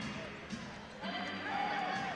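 Live basketball game sound in an arena: the ball is dribbled on the hardwood court under a crowd murmur, with a few short squeaks of sneakers.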